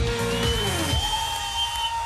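A live pop-chanson band's closing notes: the bass rhythm stops about halfway through, leaving held notes that slide in pitch. A crowd cheers.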